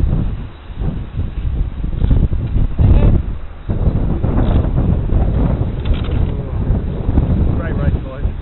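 Wind buffeting the microphone: a heavy, uneven low rumble that swells and eases, loudest around three seconds in.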